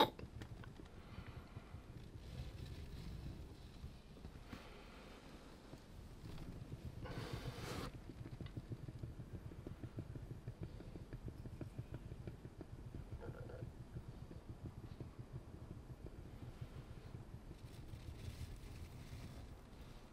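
Faint, low, fluttering rumble of a paint spinner turning with a poured canvas on it, a little stronger from about a third of the way in.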